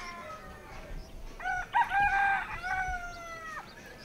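A rooster crows once, starting about a second and a half in: short opening notes, then a long held note that drops off sharply just before the end.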